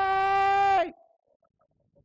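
A man's voice holding one long, high yell at a steady pitch, imitating young boys hollering in alarm at a snake; it cuts off just under a second in.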